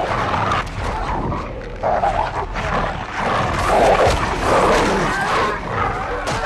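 A wolf snarling and growling in loud, repeated rough bursts as it fights with a man.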